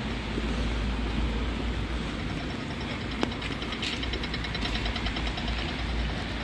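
Street traffic on wet roads: a steady hiss and low rumble of vehicles. A fast, even, high ticking runs from about two seconds in until past the middle, and a single sharp click comes a little after three seconds.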